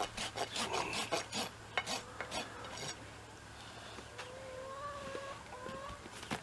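A farrier's rasp filing a horse's hoof during a trim, several quick strokes a second for about the first three seconds. Near the end, a chicken gives a drawn-out call in the background.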